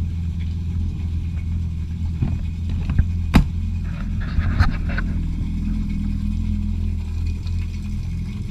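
Yamaha FX SVHO jet ski's supercharged four-stroke engine idling steadily out of the water while a garden hose feeds flush water through it. A couple of sharp knocks come a few seconds in.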